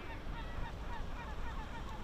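A flock of gulls calling: many short, sliding cries overlapping at several a second, over a steady low rumble.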